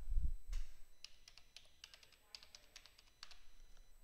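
Computer keyboard typing: a quick run of short key clicks as a mobile number is keyed in. A low thump opens it.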